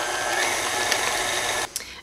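Electric tilt-head stand mixer running steadily at medium speed, its beater turning thick cream cheese batter in a stainless steel bowl; the motor cuts off suddenly near the end.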